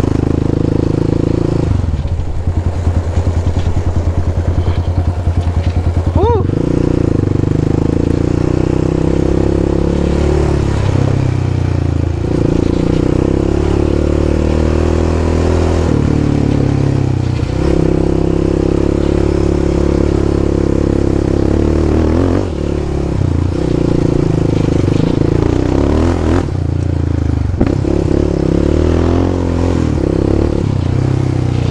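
Yamaha Raptor 700 ATV's single-cylinder four-stroke engine running under changing throttle while riding, its pitch shifting as the rider rolls on and off the gas, with a short rising rev about six seconds in.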